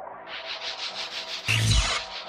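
Logo-intro sound effect: a swelling, fluttering rush of noise with music, ending in a deep boom-like impact about one and a half seconds in as the logo settles.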